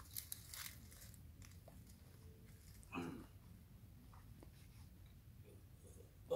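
Near silence while a climber scrambles on rock: a few faint scuffs and clicks in the first second and one short, faint sound about halfway through.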